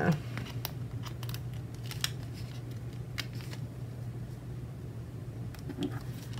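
Faint, irregular light clicks and ticks from metal craft tweezers and a paper sticker sheet as letter stickers are picked off one by one, over a steady low hum.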